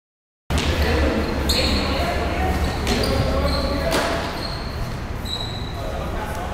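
Sounds of an indoor futsal game on a hard court floor, starting half a second in: trainers squeaking sharply on the floor about five times, a few hard ball kicks, and players' voices.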